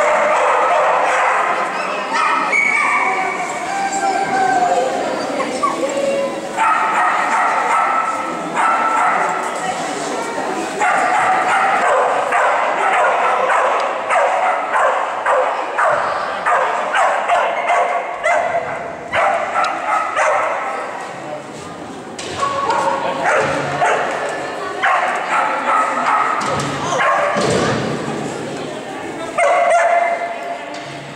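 A dog barking over and over, nearly without a break, with a person's voice mixed in.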